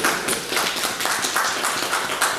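A small group of people applauding: a dense, uneven patter of hand claps.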